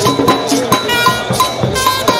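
Marching brass band playing, with trumpets over drums and struck percussion keeping a steady beat.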